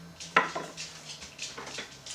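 Kitchen utensils and cookware clinking: one sharp, loud clink about a third of a second in, then several lighter knocks and taps.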